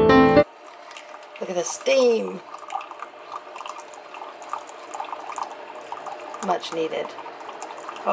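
Single-serve coffee maker dispensing coffee into a mug: a steady hissing trickle with a faint hum. Piano music cuts off half a second in, and a voice is heard briefly twice.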